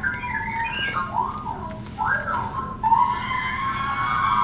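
R2-D2-style droid chatter: a string of high whistles and warbling chirps that glide up and down in pitch.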